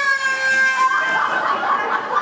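A steady high tone held for about a second, then an audience laughing and calling out as a hula-hoop contest ends.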